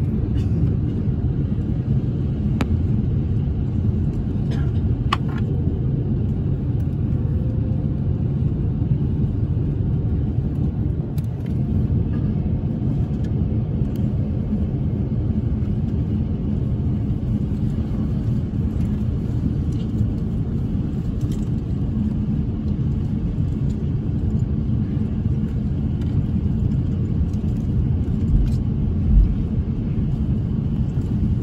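Steady low rumble inside a jet airliner's cabin as it taxis on the ground, with the engines at idle and the wheels rolling over the taxiway. A single low thump comes near the end.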